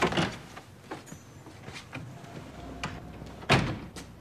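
A door shut with a thud near the end, the loudest sound, after a few lighter clicks and knocks.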